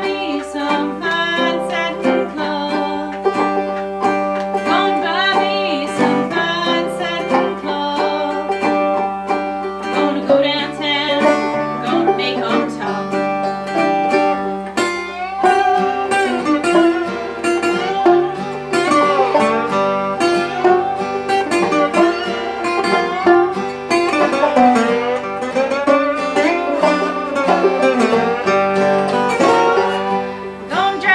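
Acoustic old-time blues song played live by an open-back banjo, an acoustic guitar and a resonator guitar, with a woman singing the melody over the plucked strings.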